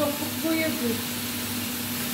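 Noodles and vegetables sizzling steadily in a frying pan over a gas flame.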